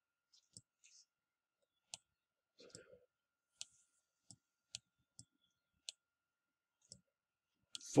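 Faint, irregular clicks, about ten in eight seconds, from a pointing device as digits are handwritten on screen, with a faint steady high tone underneath.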